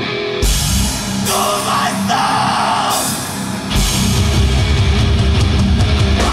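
Hardcore band playing live through the venue PA, with distorted bass and guitar and drums. The band crashes in about half a second in, and the low end gets heavier and denser just before the four-second mark.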